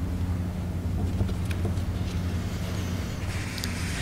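Steady low hum with a few faint light clicks, likely paper handling at the lectern.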